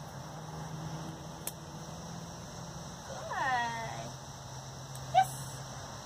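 Dog whining once, a drawn-out whine that falls in pitch about three seconds in, then a brief, sharper and louder sound just after five seconds. A steady low hum runs underneath.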